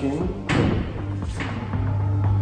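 Bright wheel balancer starting to spin a car wheel to measure its imbalance, a steady low hum building from about two-thirds of the way in, under background music; a single thump about half a second in.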